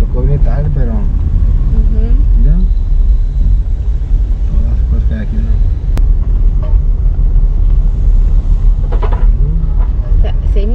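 Steady low rumble of a car driving slowly, with snatches of quiet talk and a single sharp click about six seconds in.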